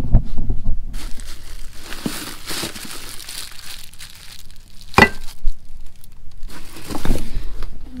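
Rummaging through boxed spare parts on a shop shelf: cardboard and packaging crinkling and rustling, with a sharp knock about five seconds in and another about two seconds later.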